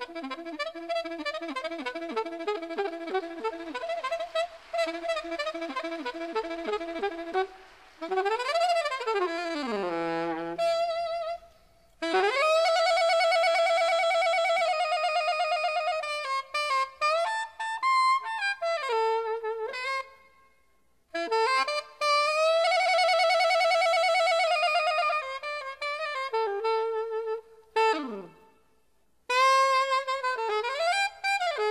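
Live modal jazz. A fast violin line in the opening seconds gives way to an alto saxophone playing alone, with swooping glides up and down, long held notes and short silences between phrases. No bass or drums are heard.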